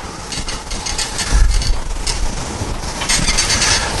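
Whiteboard eraser wiping across a whiteboard in several uneven rubbing strokes, with a low thud a little over a second in.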